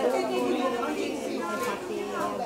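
A woman speaking Italian over a background of crowd chatter.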